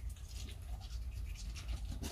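A toothbrush quietly scrubbing a golden retriever's front teeth.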